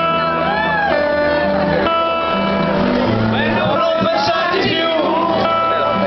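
Acoustic guitar and grand piano playing live on stage, held notes ringing under voices from the audience calling and singing along.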